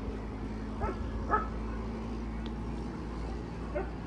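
A dog barking a few short times, about a second in and again near the end, over a steady low background rumble.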